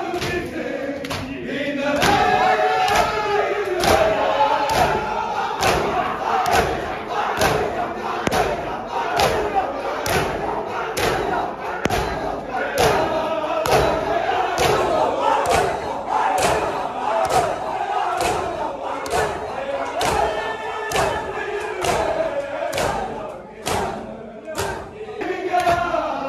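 Matam: a crowd of men slapping their bare chests in unison, a steady beat of about two slaps a second, while they chant together.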